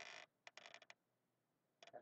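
Near silence, with a brief faint hiss at the start and two short runs of faint rapid clicks, one about half a second in and one near the end.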